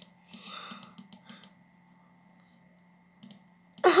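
A quick run of sharp clicks at a computer, most within the first second and a half and a couple more shortly before the end, over a faint steady electrical hum.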